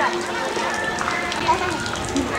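Indistinct voices of several people talking in the background, no clear words.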